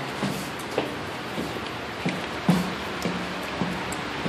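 Footsteps and light knocks going down a stairwell, with faint music underneath.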